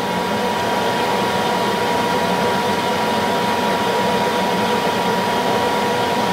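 A machine running steadily: an even whir with a constant high whine that does not change.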